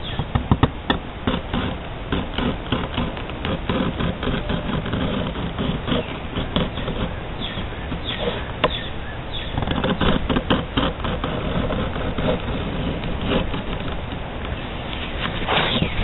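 Utility razor knife cutting through thick sheath leather along a traced line: a dense run of rough scraping strokes with occasional sharp clicks.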